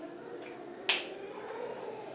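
A single sharp click just under a second in, over quiet room tone.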